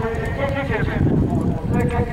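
A horse's hooves thudding on grass as it canters toward a jump close by, strongest in the second half. A public-address announcer's voice is heard over it in the first second.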